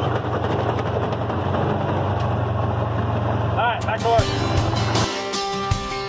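Vehicle engine running steadily, heard from inside the cab. About five seconds in it cuts off abruptly and acoustic guitar music takes over.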